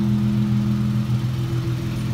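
Car engine idling with a steady, even drone.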